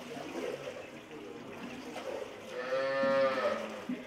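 A cow giving one long moo, starting about two and a half seconds in and lasting just over a second, over the splashing of liquid being stirred in a concrete tank with a pole.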